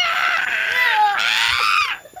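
A child's high-pitched excited squeal, held for about a second, then a second squeal that rises and falls before cutting off near the end.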